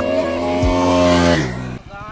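A motorcycle engine passing by, its pitch falling as it goes past, over background music with a beat. Near the end it cuts suddenly to a low, rapid pulsing of an engine running slowly.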